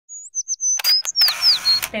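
An intro sting of sound effects: a run of high chirps that glide downward, broken by several sharp shutter-like clicks with short bursts of hiss. A woman starts speaking right at the end.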